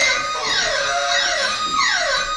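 A repeating electronic sound of quick falling glides, about one a second, each sweeping down from high to mid pitch, steady in loudness.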